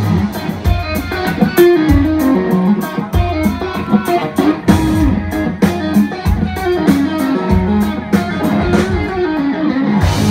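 Live band playing an instrumental passage: an electric guitar plays a moving lead line over drums and bass, with regular drum and cymbal hits.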